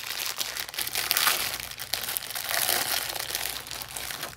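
Packaging of a pack of squish balls crinkling and crackling as it is opened by hand, loudest about a second in and again near three seconds.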